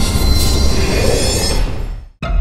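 Loud logo sound effect: a dense rushing noise with high, steady ringing tones over a low rumble. It thins out near the end and then cuts off.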